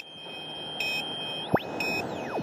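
Electronic sound effects of a TV news 'welcome back' bumper: a steady high tone with three short beeps, then, about one and a half seconds in, the tone sweeps upward while falling glides start, all over a soft hiss.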